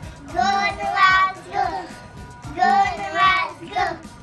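A small group of young children singing a short chant together, the same sung phrase repeating about every two seconds.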